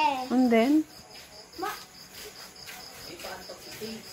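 A short voiced call in the first second, then quieter moments. Under it all runs a thin, high, steady chirping, pulsing about four times a second.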